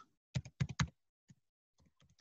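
Computer keyboard being typed on: a quick run of about five keystrokes in the first second, then a single keystroke and a few much fainter ones.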